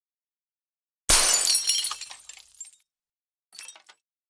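Glass shattering: a sudden loud crash about a second in, with shards tinkling away over the next second and a half, then a short, quieter scatter of tinkles near the end.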